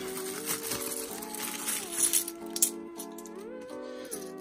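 Background music of steady held notes, over the light clinking of bimetallic £2 coins being handled and stacked in the hands, with a couple of sharper clinks about halfway through.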